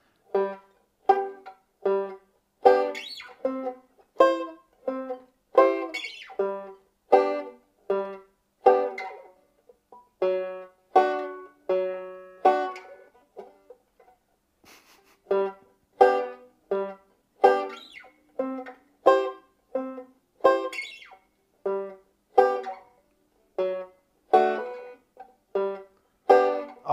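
Five-string banjo vamping: short chords struck about twice a second, each one cut off quickly, with a softer stretch a little past halfway.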